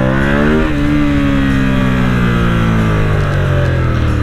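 Ducati XDiavel S's V-twin engine pulling under acceleration, its pitch rising for the first half-second or so. Then the throttle closes and the revs fall away steadily as the bike slows.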